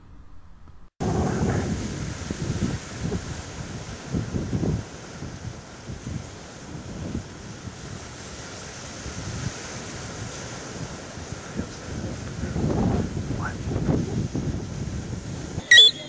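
Wind buffeting the microphone over the steady wash of sea surf, starting about a second in and rising and falling in irregular gusts. A short high-pitched chirp sounds just before the end.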